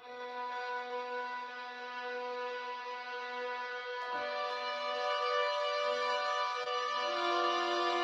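Sampled orchestral strings from a software Smart Strings instrument holding a sustained chord, a spread voicing of B minor seven flat five with a flat nine. Notes shift about four seconds in and a lower note joins near the end, with the sound slowly growing louder.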